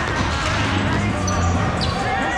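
Indoor volleyball in a large hall: the ball bouncing and thumping on the sport-court floor amid players' voices.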